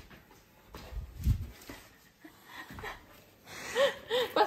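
An Akita's snuffling breaths as a hard plastic helmet is handled around its head, with a dull bump about a second in.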